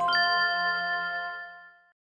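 A bright, bell-like chime: several notes struck almost together and ringing on as one chord, fading away over nearly two seconds. It is the audio sting of an animated logo.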